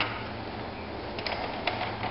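Faint clicks and handling noise from a large hard-plastic toy jet being turned in the hands, a few light clicks about one second in and again near the end, over a steady background hiss.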